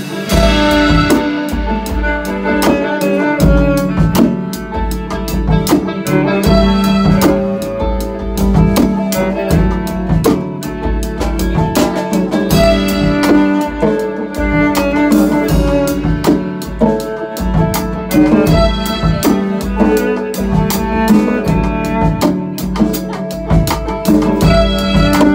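Live band jamming: hand drums and percussion strike a busy, steady rhythm over sustained keyboard and string notes.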